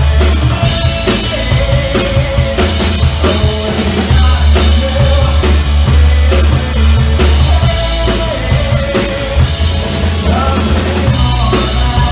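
Live rock band playing through the PA: electric guitars, bass guitar and a drum kit with heavy kick drum, a full, loud band sound.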